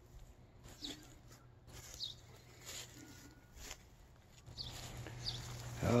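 Faint footsteps through dry grass, with a few short, high bird chirps spaced a second or so apart.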